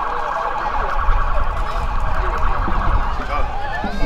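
An electronic siren in a fast, rapidly repeating warble, which cuts out about three seconds in. Wind rumble on the microphone runs underneath.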